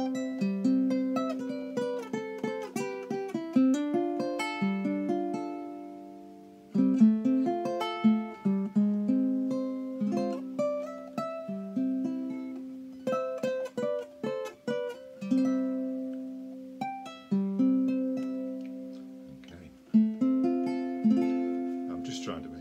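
Tenor/baritone ukulele (tenor scale on a baritone body, ancient bog oak back and sides, European spruce top) played fingerstyle: a slow tune of plucked single notes and chords that ring and fade. About five seconds in the notes die away, and the playing picks up again with a sharp note about a second later.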